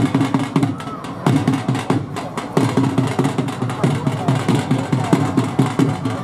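A drum beaten in a fast, steady rhythm, with voices underneath.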